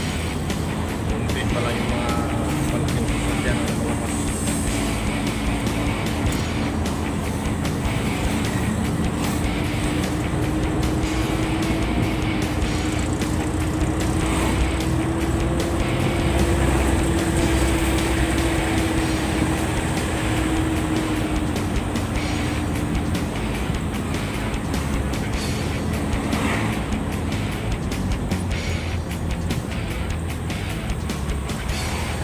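Cargo truck's engine running under way, heard from inside the cab: a steady hum that rises a little in pitch and falls back as it drives, over a constant road rumble.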